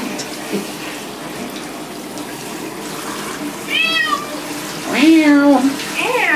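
A wet calico cat meowing twice over the steady spray of a handheld shower wand rinsing her in a bathtub: a short high meow about four seconds in, then a longer, lower meow a second later.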